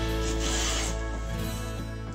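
A wooden hand plane taking a shaving off a board in one stroke, a rasping hiss strongest in the first second, over background music.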